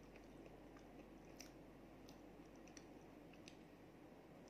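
Faint chewing of a chocolate chip cookie cup, heard as a few soft, scattered mouth clicks and crunches over a low steady hum.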